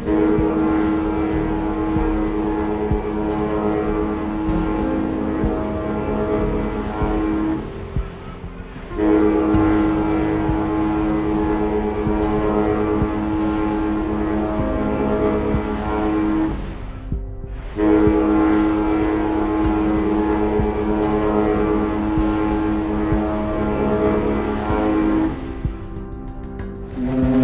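Cruise ship horn sounding three long blasts of about seven to eight seconds each, separated by short breaks. Each blast is a steady chord of several tones.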